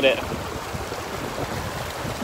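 Steady rush of running stream water, with no distinct events, after a last spoken word at the very start.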